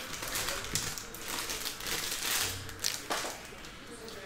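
Trading cards being handled by hand on a table mat: irregular rustling and scraping as cards slide against each other and the mat, with a few light clicks.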